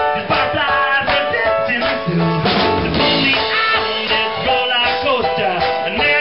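Live band music: a song played on keyboard/piano with a drum kit keeping the beat.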